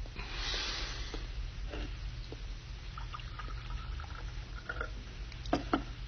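Quiet room with a brief hiss about half a second in, a scatter of faint light clicks, and two sharper knocks close together near the end.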